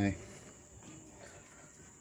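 Low, steady background with a faint, continuous high-pitched insect drone.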